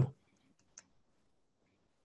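Near silence with one faint, short click just under a second in.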